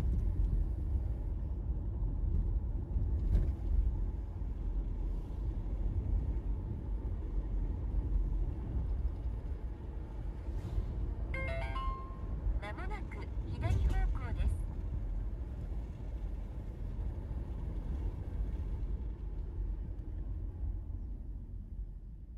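Car cabin noise while driving, a steady low road-and-engine rumble. About halfway through, a short electronic chime of rising notes ending on a held tone, followed by a couple of seconds of gliding tones.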